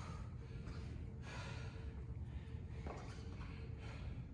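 A man breathing hard, heavy breaths in and out about once a second: winded after a high-intensity interval, recovering during the rest break.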